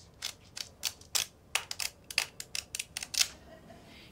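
Paper pages of a flick book being flicked through with a thumb: a quick, irregular run of sharp paper clicks that stops a little after three seconds in.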